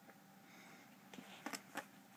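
Faint scuffling and rustling from a cat wrestling a catnip toy on carpet, with a few short sharp scuffs in the second half, the two loudest close together near the end.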